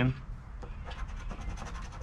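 A poker-chip-style token scratching the coating off a scratch-off lottery ticket in a run of rapid short strokes.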